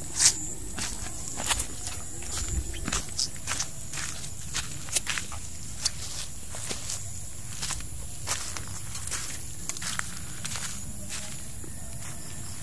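Footsteps of a person walking on sandy ground and grass, an uneven series of soft steps with a sharper knock just after the start. A steady high-pitched insect trill runs behind.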